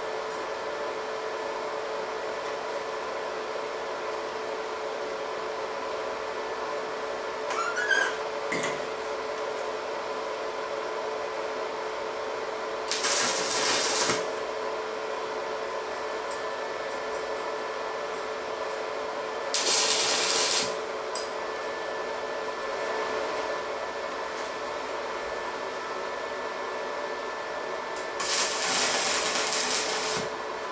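Stick welding tack welds on a steel-tube frame: three short arc crackles, each about a second long, the last one near the end. A steady hum from the running welding machine underlies them.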